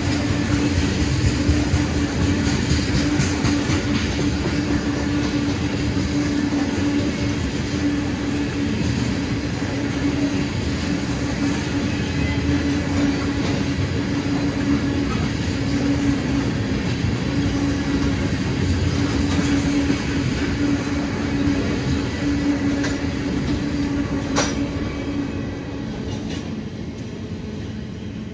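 Loaded tank cars of a long freight train rolling past, with steady wheel-and-rail noise and a steady low tone underneath. There is a sharp clank about twenty-four seconds in, and the sound fades as the end of the train passes near the end.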